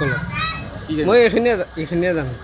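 A man speaking into reporters' microphones.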